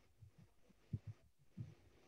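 Near silence: room tone with a few faint, short low thumps.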